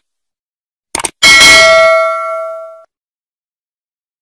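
Subscribe-animation sound effects: a short mouse click, then a notification bell ding that rings out and fades over about a second and a half.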